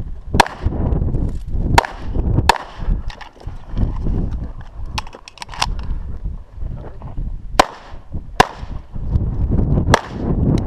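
CZ SP-01 9mm pistol firing about seven shots at an uneven pace: a single shot shortly after the start, then three quick pairs, each pair well under a second apart. Each report is sharp and short.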